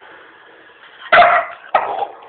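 An American Staffordshire Terrier barking twice, two short barks about a second in and again near the end.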